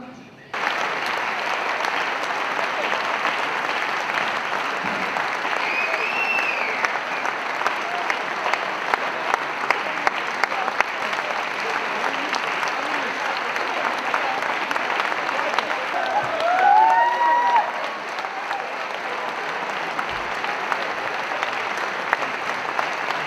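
An audience applauding in a hall, starting just after a short pause and going on at a steady level. A few short voices call out above the clapping about six seconds in and again around sixteen seconds in.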